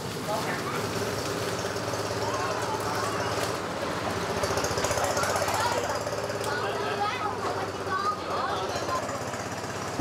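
A small engine running steadily with a fast, even beat, with people's voices in the background.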